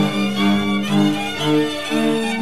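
Bowed string music playing an old Orava folk tune: fiddle melody over low bowed accompaniment that changes chord about twice a second.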